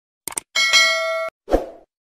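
Subscribe-button animation sound effect: a quick double mouse click, then a bright bell-like ding that cuts off suddenly, followed by a short low thud that fades.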